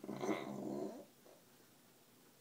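A short wordless vocal sound, about a second long, low and buzzy, at the very start.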